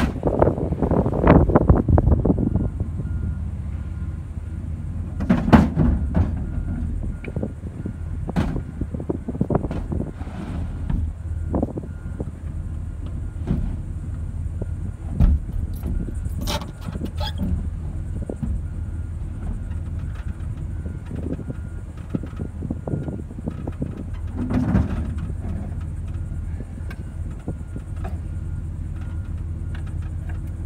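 A heavy engine running steadily, heard from inside a pickup cab, with irregular knocks and clunks as wooden boards are fitted over the truck's back window; the knocking is loudest in the first couple of seconds.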